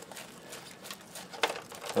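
A thumb rubbing over a dried sunflower head, working the seeds loose with a soft dry rustle and many small clicks as the seeds drop into a plastic tray, one slightly louder click about one and a half seconds in.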